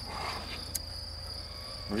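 Crickets chirring in the grass, one steady high-pitched trill, with a single sharp click about three quarters of a second in.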